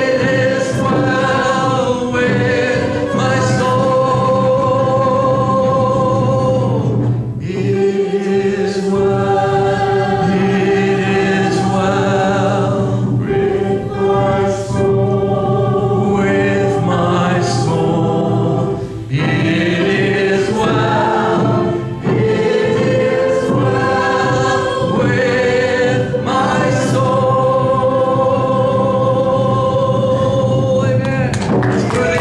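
Gospel worship song sung by several voices together with guitar accompaniment, in long held phrases with short breaks between them.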